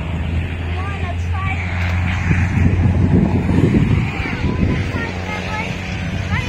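Outdoor noise: wind rumbling on the microphone, strongest around the middle, over a steady low hum, with a few faint short chirps.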